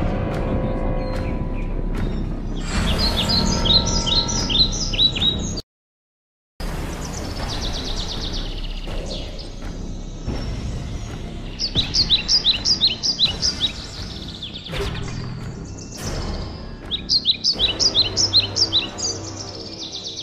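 A bird's call: rapid runs of short, falling, high chirps, heard three times, over a steady low background. The sound cuts out completely for about a second early on.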